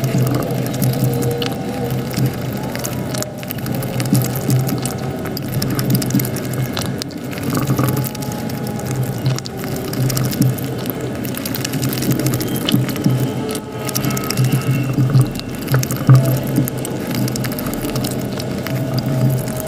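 Close-miked chewing and wet mouth sounds of a person eating soft food, with many small clicks and the occasional scrape of a wooden fork on a ceramic plate.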